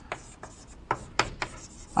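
Writing on a board: a series of short, scratchy strokes, about six in two seconds.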